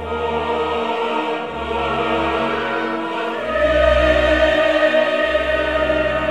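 Orchestral music with a choir singing long held notes, growing louder about halfway through.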